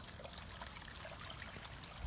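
Faint, steady trickle of water running from the outlet pipe of a pond's filter tank down into a sump.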